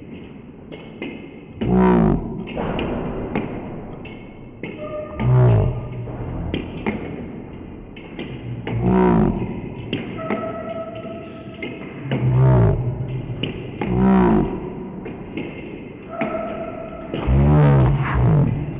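Table tennis rally: the plastic ball clicking off the rubbers and the table in quick succession, with louder thuds and short voiced calls every few seconds.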